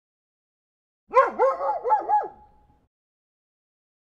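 After about a second of silence, a quick run of four pitched, yelping, dog-like calls, each bending down and back up in pitch, lasting about a second and a half before fading out.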